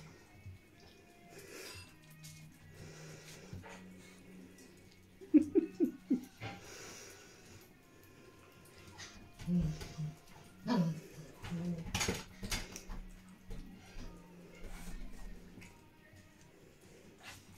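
Spitz puppies eating soft mash from steel bowls, with small scuffles and clicks as they move around the bowls. A short puppy whimper comes about five seconds in.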